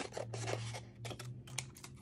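Scrap paper being handled and pressed onto a sketchbook page: a run of short, crisp rustles and clicks, over a steady low hum.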